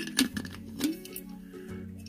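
Light clicks and clinks from an aluminum canteen and its screw cap being handled, a few sharp ones in the first second, over steady background music.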